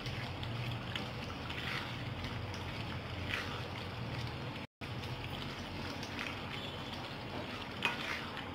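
Chicken curry simmering and frying in a nonstick kadai while it is stirred with a silicone spatula. It makes a steady hiss with a few soft scraping strokes, broken by a very short gap near the middle.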